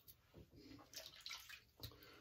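Faint, short scraping strokes of a double-edge safety razor through lather and stubble, several in quick succession.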